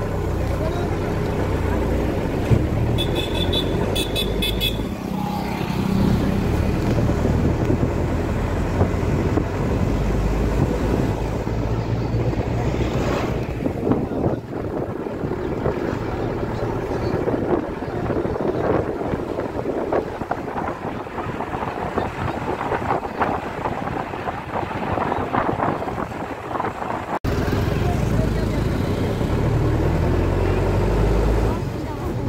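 Steady rumble and road noise of a moving vehicle, with a few short horn beeps about three to four seconds in.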